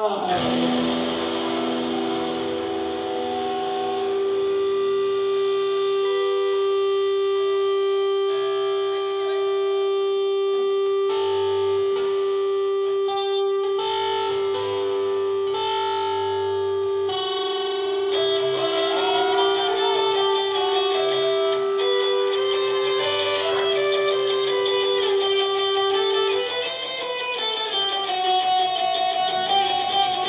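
A live band in an instrumental break, led by a distorted electric guitar. It holds one long sustained note for about twenty seconds, then bends notes up and down near the end, over strummed acoustic guitar and the rest of the band.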